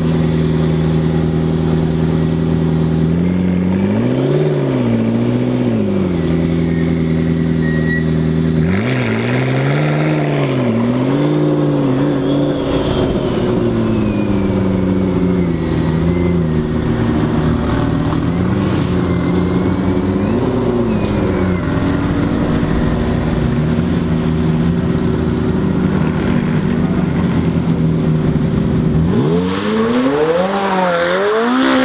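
Twin-turbo V8 engines of McLaren supercars, one after another, running at a steady low pitch and blipped in short revs that rise and fall. Near the end another engine revs up with a rising pitch.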